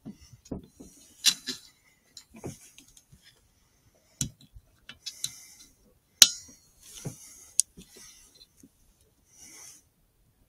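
Short squeaks on a hand-blown fox whistle used to call in a fox, mixed with irregular close clicks and knocks from handling the rifle and scope, the sharpest click about six seconds in.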